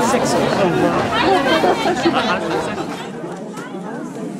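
Several people chatting at once, their voices overlapping with no single clear speaker. About three seconds in, the low background rumble drops away and the chatter gets a little quieter.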